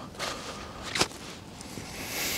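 Faint outdoor background noise with a single sharp click about a second in.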